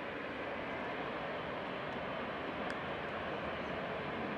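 Jet engines of a Boeing 737 airliner rolling along the runway: a steady rushing engine noise that grows slightly louder.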